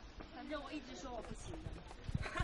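Indistinct chatter of several hikers' voices, with a few footfalls on stone steps.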